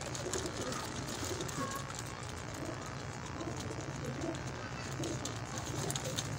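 Domestic fancy pigeons cooing faintly over a steady low background hum.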